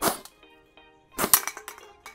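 Two sharp cracks, one at the start and a crackling one a little over a second later with clinking like glass being struck or breaking, as a homemade water-pipe blowgun is fired at drinking glasses.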